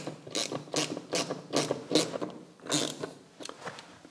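Ratcheting screwdriver with a socket attachment clicking as it turns a bolt into a pre-drilled hole in a wall, in short strokes about two to three a second, growing quieter near the end.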